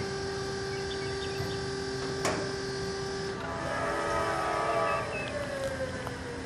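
Diesel locomotive machinery: a steady hum with a few fixed tones, then, about three and a half seconds in, a cluster of whining tones and a pitch that falls slowly and steadily.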